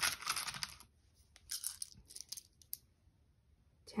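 Small stamp-game tiles clattering against each other in a wooden box as a hand sorts through them, picking out unit tiles. A burst of clicks comes at the start, another about a second and a half in, then a few scattered clicks.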